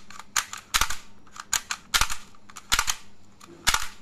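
Mechanism of an ARMA Glock 18 shell-ejecting toy blaster, made of ABS, nylon and metal, being worked by hand. It gives a series of sharp plastic-and-metal clicks, several in quick pairs, about one every half second to second.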